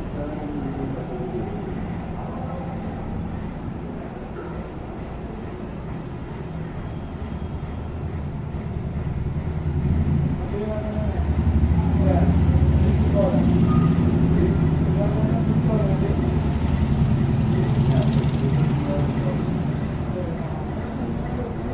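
A vehicle engine running, with a low rumble that grows louder about ten seconds in, and people's voices faintly in the background.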